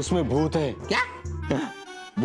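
A puppy yipping a few short times over background music.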